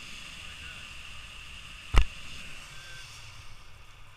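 Wind buffeting the microphone of a camera held out from a tandem paraglider in flight: a steady rushing hiss over a low rumble, with one sharp knock on the camera or its pole about two seconds in.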